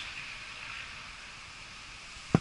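Faint, steady hiss of road traffic on a nearby boulevard, fading slightly over the two seconds.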